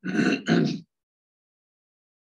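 A person clearing their throat in two quick pushes within the first second.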